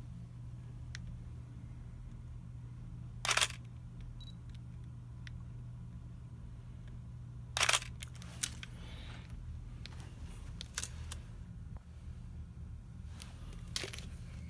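Nikon DSLR shutter fired twice, about four seconds apart, each a short mechanical clack of mirror and shutter. Just after the first comes a brief faint electronic beep, the camera's focus-confirmation signal, and small handling clicks follow later.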